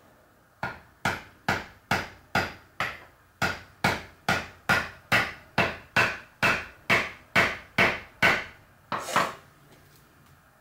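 A hammer striking the plastic handle of a screwdriver held upright on a whole coconut, driving the blade into one of the coconut's eyes. There are about twenty steady strikes, a little over two a second, stopping just after nine seconds in.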